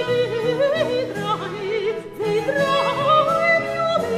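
Soprano singing a florid Baroque cantata aria with quick ornamented turns and trills, over a bowed-string accompaniment with sustained bass notes.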